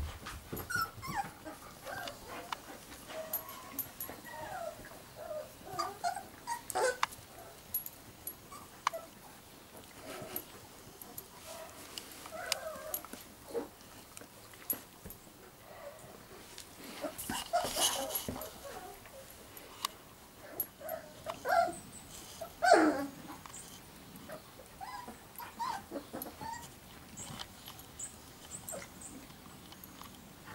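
Giant schnauzer puppies whimpering and squeaking in many short high calls, with one louder yelp falling in pitch about 23 seconds in. Scattered knocks and scuffs in between.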